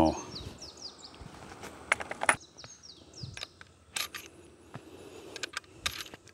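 A few sharp clicks at uneven intervals, a lever-action .357 Magnum carbine being handled and loaded. Birds chirp in short falling calls in the background.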